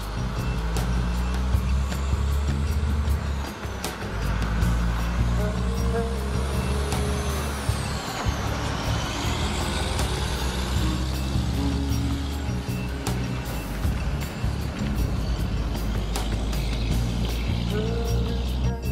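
A heavy road train pulls out and passes close by, its diesel engine and many tyres running loud, with background music over it.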